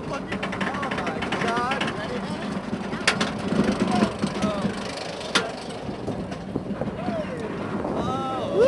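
Bolliger & Mabillard steel roller coaster train cresting the lift hill, the lift-chain clicking running on rapidly for the first couple of seconds, then rushing down the drop with steady wind and track noise. There are two sharp clacks, and riders give short yells.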